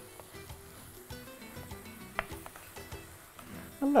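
Vegetables frying in a kadai, a light sizzle with a spatula stirring and scraping against the pan and a few short clicks, under quiet background music.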